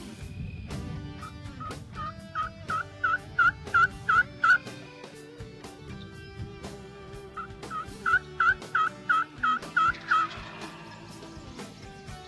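Two series of hen turkey yelps, about eight notes each, the first starting about a second in and the second about halfway through. Background guitar music plays underneath.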